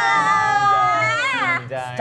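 A long, high-pitched, drawn-out vocal wail, a whiny "wooow" that slowly falls in pitch. It rises and falls sharply and breaks off about one and a half seconds in, and a short word follows.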